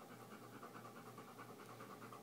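Dog panting faintly, in quick, even breaths several times a second.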